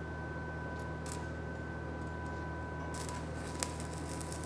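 Steady low hum with a faint high whine, then about three seconds in the crackle and sputter of a stick-welding arc starts, a Vulcan 4400-AS all-steel electrode laid down in the joint and left to burn.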